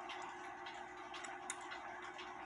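Faint ticking of a Lux Pendulette pendulum clock's movement, with a faint steady hum underneath.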